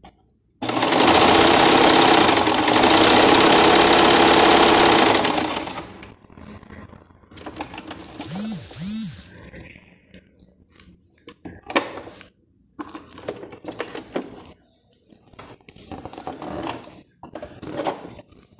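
Elgin JX-4000 electric sewing machine stitching at speed for about five seconds, starting suddenly, with a fast, even needle rhythm; it has just been rethreaded so that the thread no longer breaks. After it stops come light clicks and knocks of handling, and a brief two-note squeak.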